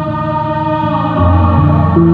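Ambient improvised music on electric bass played through effects: layered sustained tones held like a drone, with a new low bass note coming in a little past a second in.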